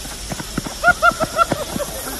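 A quick run of about five short, high, pitched calls, a voice whooping or laughing, over a few dull thuds of feet running on the cricket pitch.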